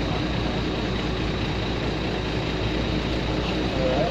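Steady road-traffic noise with a low rumble and a faint steady high tone.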